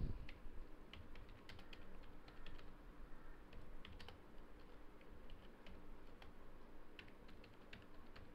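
Faint, irregular keystrokes on a computer keyboard as a line of text is typed.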